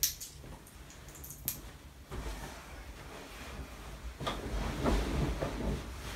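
A person shifting her weight on a wooden folding massage table: two sharp clicks in the first second and a half, then fabric rustling and the table creaking from about two seconds in, loudest a little past the middle.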